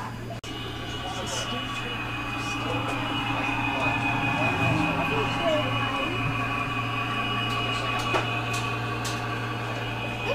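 Electric model train running around a layout's track: a steady hum with the rolling of its wheels on the rails, growing louder over the first few seconds as the locomotive comes near.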